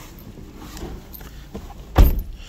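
Rustling and handling noise as a person climbs into a car's driver's seat, with a few faint clicks, ending in one sharp, loud thump as they settle into the seat.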